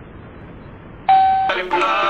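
Low hiss of an old radio recording, then about a second in a single short beep, the radio time signal marking the exact hour. Music starts immediately after it.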